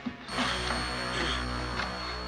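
Film soundtrack: a low sustained music drone, joined about a third of a second in by a sudden burst of rattling, mechanical-sounding noise with a thin high whine.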